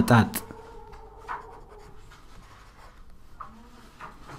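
A short spoken syllable at the very start, then faint computer-keyboard typing as Amharic text is entered, with a few soft clicks over a faint steady hum.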